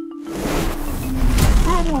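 Cartoon sound effect of a heap of snow sliding off a roof and landing on someone. It is a rushing noise that builds to a heavy thump about a second and a half in, over a held music note.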